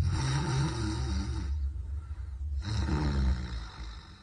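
A man snoring loudly in deep sleep: two long, rough snores, the second starting after a short pause about two and a half seconds in.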